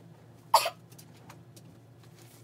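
A single short cough about half a second in, over a faint steady low hum.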